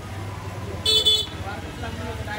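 A vehicle horn tooting twice in quick succession, high-pitched and the loudest sound, about a second in. Underneath are a steady low hum and background street chatter.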